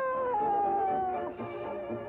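A cartoon dog's howl: one long note that slides downward and ends a little past a second in, over orchestral background music.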